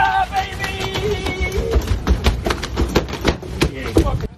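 A large tuna hauled aboard a boat and thrashing on the deck: a fast, irregular run of thumps and slaps, with water splashing and men shouting at the start.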